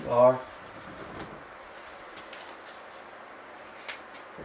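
Marker pen writing on a whiteboard: faint scratchy strokes and light clicks, with a sharper click near the end.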